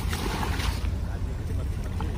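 Wind buffeting the microphone at the shoreline: a steady low rumble, with a short hiss of noise in the first second.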